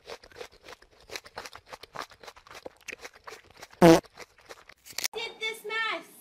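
A groundhog chewing crunchy food: a rapid, irregular run of small crunches. It is broken a little before four seconds in by one short, loud vocal sound. After about five seconds a person's voice takes over.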